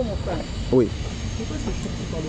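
A man's voice saying a few short words, among them "oui", over a steady low rumble.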